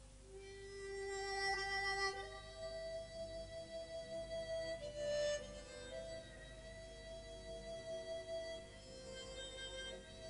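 Chromatic harmonica playing a slow melody in long, held notes, a few note changes over the span.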